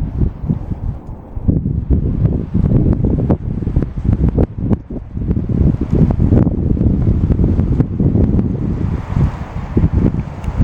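Wind buffeting the camera's microphone: loud, irregular low rumbling gusts with sharp pops.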